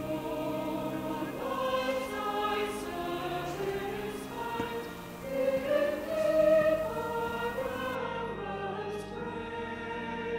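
A choir singing slow music in held, sustained chords, swelling louder a little past the middle.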